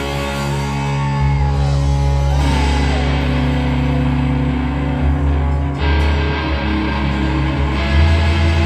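Live rock band playing: electric guitar with sustained, sliding notes over heavy bass and drums. The bass shifts to new notes about a second in and again about five seconds in.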